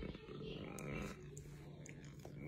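A man's low, indistinct voice, with a steady low hum underneath from about half a second in.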